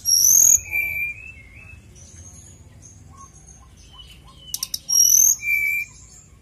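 Brown-chested jungle flycatcher (sikatan rimba dada coklat) singing two loud song phrases, one at the start and another about four and a half seconds in. Each phrase opens with a few quick clicks and runs into clear, high whistled notes and a lower whistle, with softer chirps in between.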